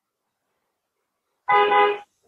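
Near silence, then about one and a half seconds in a steady held tone starts suddenly and lasts about half a second.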